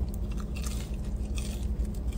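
A person biting into and chewing french fries close to the microphone, with soft irregular mouth noises over a steady low hum.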